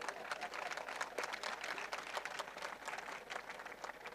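Faint audience applause: a steady patter of many hands clapping.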